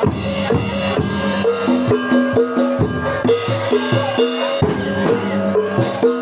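A Javanese jaranan gamelan ensemble playing: steady drum strokes over repeated ringing notes of small bronze kettle gongs.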